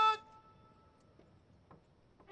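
A military brass band's held chord stops just after the start, and its echo fades away over about a second. A near-silent pause with a few faint ticks follows.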